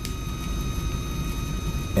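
Steady low background rumble with a few faint, steady high tones, and a short click right at the start.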